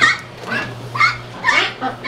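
Domestic Pekin ducks quacking, a run of short loud calls about two to three a second.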